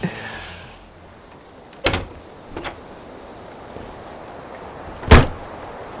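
Two sharp knocks: a lighter one about two seconds in and a much louder one about five seconds in, with a couple of small clicks between them.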